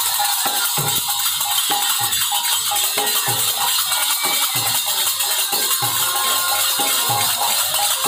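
Bengali kirtan ensemble playing without singing: khol clay drums beating deep strokes about once a second under continuous jangling kartal hand cymbals, with a bamboo flute (bansi) melody over them.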